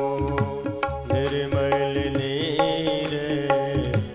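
Devotional bhajan music: tabla played in a steady rhythm under a sustained melody on an electronic keyboard, with a long held note from about a second in to near the end.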